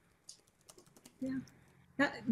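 A few faint clicks in quick succession during the first second, followed by a brief spoken "yeah".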